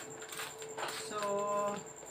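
Plastic snack packet crinkling as a small metal hook is worked through its top, a few short rustles and clicks in the first second.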